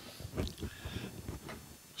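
Faint handling noise of someone moving about at the workbench, with a soft knock about half a second in.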